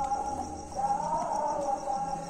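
Crickets trilling steadily in a high, evenly pulsed chirp, with background music playing alongside.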